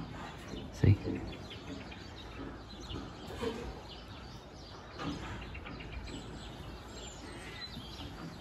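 Quiet farm-shed ambience: a low steady hum with a few faint, scattered bird chirps.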